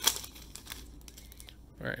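Foil wrapper of a trading-card pack being torn open and crinkled by hand, with one sharp crackle right at the start followed by faint rustling.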